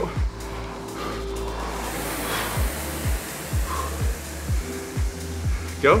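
Background music with a steady beat, under the air whoosh of a Concept2 rower's fan flywheel as a stroke is pulled about two seconds in.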